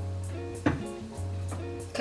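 Background music with a steady beat: a deep bass line that comes and goes in a regular pattern under light, evenly spaced high ticks.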